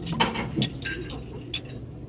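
Metal fork and spoon clicking and clinking lightly against a ceramic soup bowl as noodles are twirled and lifted, with a few separate small clinks.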